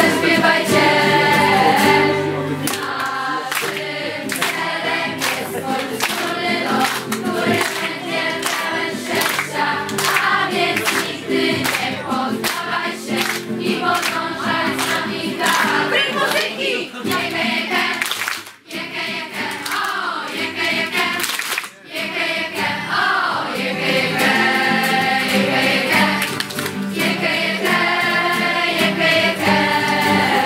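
A large group of young voices singing together, accompanied by strummed acoustic guitars, with a couple of brief breaks between phrases past the middle.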